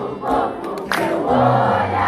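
Concert audience singing the song together in unison over a strummed acoustic guitar.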